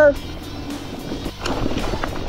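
Husqvarna Hard Cross 2 e-mountain bike rolling over a dirt trail: steady tyre and wind noise on a helmet camera, with a louder rush of noise about one and a half seconds in.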